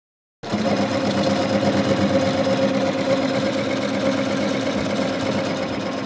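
ZSK Sprint multi-needle embroidery machine running steadily, its needle head stitching conductive e-textile sensors into fabric; the sound begins about half a second in.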